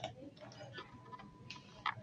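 A few faint computer mouse clicks, two of them near the end, over quiet room tone.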